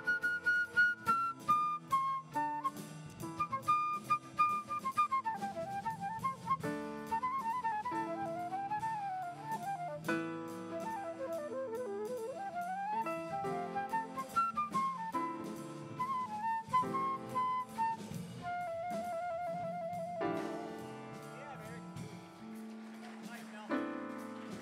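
Jazz flute solo over a drum kit: quick melodic runs up and down, with a fast trill about three-quarters of the way through, and drums and cymbals played steadily behind.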